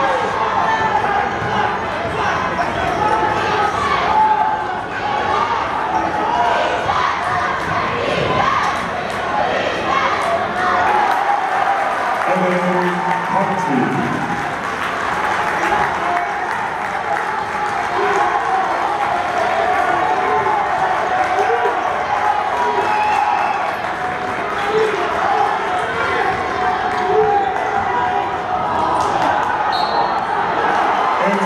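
Basketball game in a large arena: a ball bouncing on the hardwood court amid a steady din of crowd voices and shouts.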